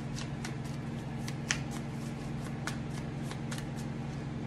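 A deck of tarot cards being shuffled by hand: a run of light, irregular card clicks, one sharper about a second and a half in, over a steady low hum.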